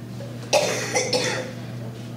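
A person coughs twice in quick succession, the first about half a second in, the second just after the one-second mark, over a steady low electrical hum.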